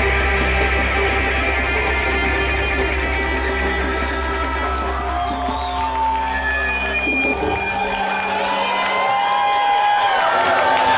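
A live folk-rock band holds its final chord on fiddle, electric guitars and bass guitar. The low bass cuts off about eight seconds in, and an audience cheers and whoops as the music ends.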